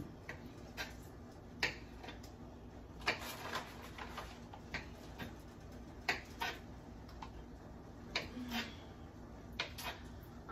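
Kitchen knife slicing sausage into rounds on a plastic cutting board: sharp, irregular knocks of the blade hitting the board, roughly one or two a second.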